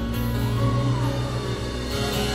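A live band playing on acoustic guitars, holding steady chords over a deep low end in an instrumental stretch without singing.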